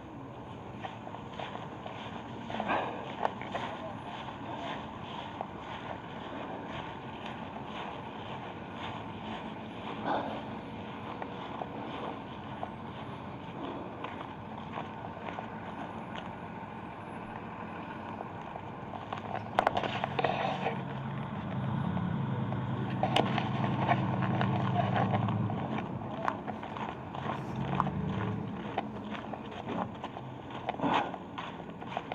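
Footsteps of a person walking outdoors, with a low steady vehicle engine hum that grows louder from about two-thirds of the way in and fades near the end.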